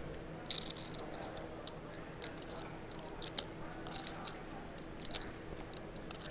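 Faint room tone at a live poker table: a steady low hum with scattered small, sharp clicks throughout.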